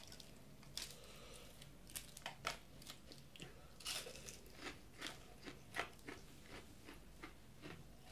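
A person biting into and chewing crisp fried onion rings: a run of small crunches, about two a second.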